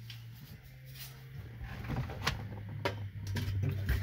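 A metal dash speaker grille being handled and fitted against a car's steel dashboard: scattered clicks and light taps, more frequent and louder in the second half, over a steady low hum.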